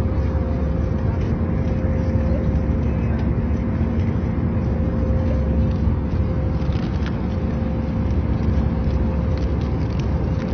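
Airliner cabin noise in flight: a loud, steady low rumble of the jet engines and air flow, with a steady hum on top.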